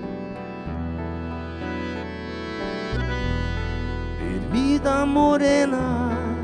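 Gaúcho nativist music played live on nylon-string acoustic guitar, accordion and electric bass, an instrumental passage without words. A louder, wavering melody line comes in about four seconds in.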